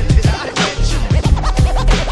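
Hip hop beat with DJ turntable scratching: quick back-and-forth scratches sweeping up and down in pitch over a drum loop with heavy kicks.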